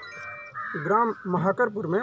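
A man speaking, after a brief steady tone in the first half second.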